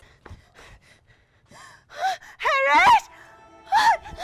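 A woman crying out in high, wavering, emotional cries: a short one about two seconds in, a longer wavering one just after it, and another short cry near the end. Faint background music runs underneath.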